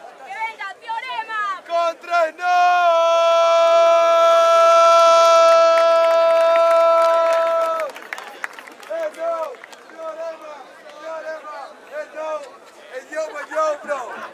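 Voices calling out, then a single voice holding a long shout on one steady note for about five seconds, then scattered crowd chatter.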